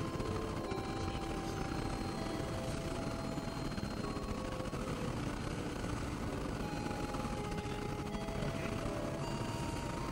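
Experimental synthesizer noise music: a dense, steady rumbling noise bed with short held tones at shifting pitches coming and going over it.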